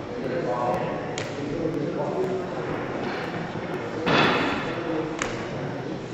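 Indistinct voices echoing in a large hall, with two sharp clicks, one about a second in and one near the end, and a louder, short noisy burst about four seconds in.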